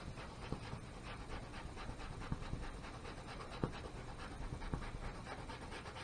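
Paintbrush scrubbing acrylic paint onto a canvas on an easel in short repeated strokes: a quiet, rhythmic scratching with an occasional sharper tick.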